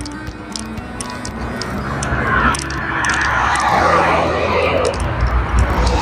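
Road traffic on a dual carriageway, with tyre and engine noise swelling louder from about two seconds in as vehicles pass close by. Background music runs underneath.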